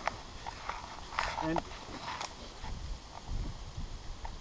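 Scattered clicks and clinks of rope-climbing gear (ascender, carabiners and rope) as a climber moves up a tree, over a low rumble on the microphone.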